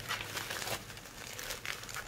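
Plastic bubble wrap crinkling in irregular bursts as it is handled and pulled open around packaged nail files, busiest in the first second.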